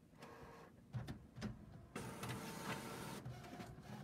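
Sublimation printer starting a print job: a few clicks and knocks as the sheet feeds, then a steady whir of the print mechanism for about a second before it quietens.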